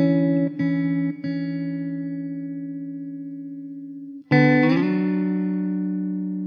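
Background music on guitar: a couple of plucked notes ring out and slowly fade, then a new chord is struck a little past four seconds in and left ringing.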